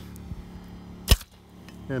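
A plastic maple sap tap pops out of its taphole in the tree as a pry bar levers it loose: one sharp pop about halfway through.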